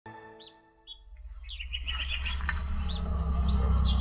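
Small birds chirping: a quick run of chirps about two seconds in, then single short chirps every half second or so. A low rumble builds up underneath. A brief held musical chord sounds at the very start.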